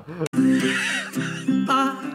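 Music with held guitar notes, then a woman laughing heartily in quick repeated peals from about one and a half seconds in.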